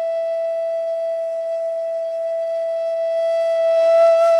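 A bansuri (bamboo transverse flute) holding one long note at a steady pitch.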